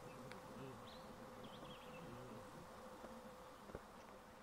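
Faint insect buzzing over a steady low hum, with a few faint high chirps about one to two seconds in and a single sharp tick near the end.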